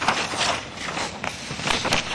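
Sheets of paper being turned over and handled close to a microphone: a rustle with several small clicks.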